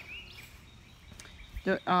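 Quiet outdoor background with no distinct sound. A person starts speaking near the end.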